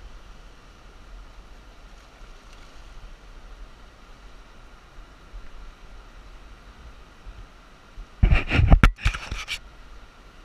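Steady rush of a shallow, rocky river. About eight seconds in comes a loud burst of scuffing and knocks lasting about a second and a half.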